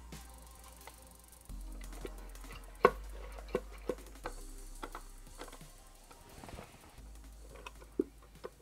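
Small wooden box being handled, its lid closing with a series of light wooden knocks and clicks, the loudest about three seconds in, as it is worked to get the brass cup hook to catch on the solenoid latch.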